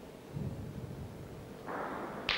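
Low rumbling noise in a bocce hall, then, near the end, a rising rush as a bocce ball is thrown hard down the court at the jack.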